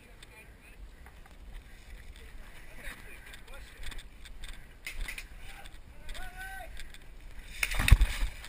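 Rustling, knocks and footsteps on dry debris and concrete as a player moves in airsoft gear, over a low wind rumble on the microphone, with a loud knock near the end. Faint distant voices come through about three quarters of the way in.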